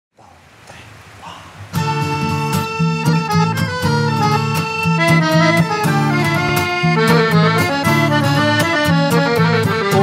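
Instrumental intro on piano accordion and strummed acoustic guitar: the accordion holds chords over regular guitar strums. The music starts about two seconds in, after a moment of faint room noise.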